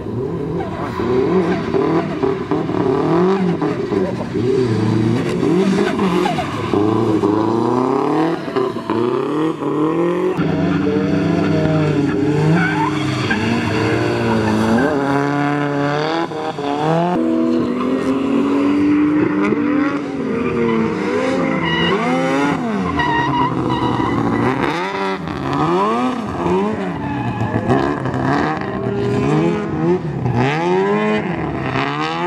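Drift cars' engines revving hard, pitch rising and falling again and again as they are driven sideways through the corners; often more than one car is heard at once.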